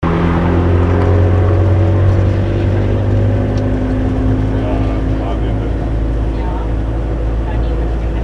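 Engine of a passenger bus heard from inside its open-windowed passenger compartment, running steadily under way with a loud low hum and road and wind noise.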